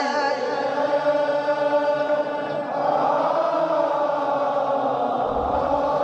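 A man's mournful chanted lament in Arabic, holding one long note at a steady pitch. About halfway through it blurs into a fuller wash of voices.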